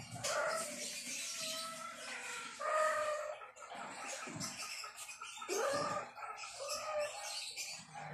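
Kittens mewing: short, high calls repeated about once a second, some sliding in pitch.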